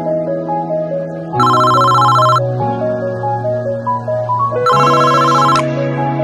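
Soft background music with a steady beat, over which an electronic telephone ring sounds twice, each ring about a second long, the first about one and a half seconds in and the second near the end.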